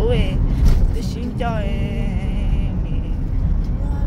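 Steady low engine and road rumble heard from inside a moving car's cabin.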